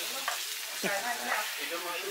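A steady high hiss, with faint voices or laughter briefly about a second in.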